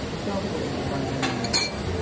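Two sharp clinks of metal serving utensils against dishware at a buffet, a little over a second in, the second the louder with a brief ring, over background voices.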